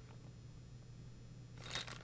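Faint room tone with a steady low hum, and a brief soft noise near the end.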